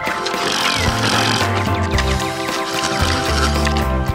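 Background music with a steady beat, a bass line that changes notes every second or so, and sustained keyboard tones.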